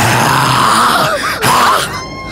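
A woman's hoarse, strained cries of distress as she is attacked: one long cry, a brief break, then another about a second and a half in.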